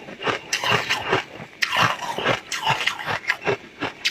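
Close-miked eating of a ball of sweet pink ice: irregular sharp crunches, bites and wet slurps, a few a second.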